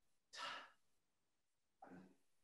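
A man's soft sigh, a single breathy exhale about half a second in, in an otherwise near-silent pause; a faint brief vocal sound just before the end.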